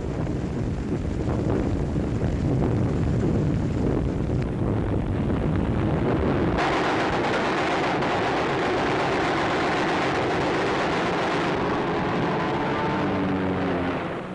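Air-combat sound on an old newsreel soundtrack: aircraft engines running with gunfire, a dense steady din that turns abruptly brighter and harsher about six and a half seconds in.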